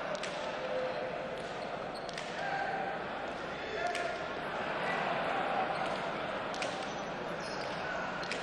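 A leather pelota being struck with bare hands and cracking off the fronton's front wall and floor during a rally, with sharp smacks about every two seconds over crowd chatter.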